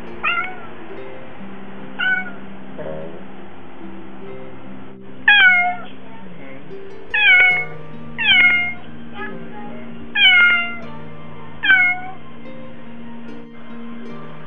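A Siamese-mix cat meowing repeatedly to wake a sleeping person: two softer meows near the start, then five louder ones a second or two apart, each dropping in pitch at the end. Background music plays underneath.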